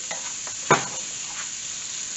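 Chickpeas frying and sizzling in curry paste in a nonstick frying pan while a silicone spatula stirs them, a steady hiss with one sharper spatula knock against the pan a little under a second in.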